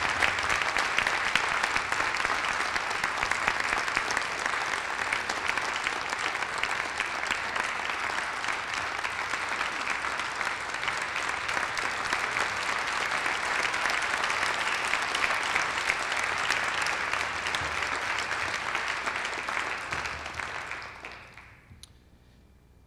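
Audience applauding steadily in a large auditorium, the clapping dying away near the end.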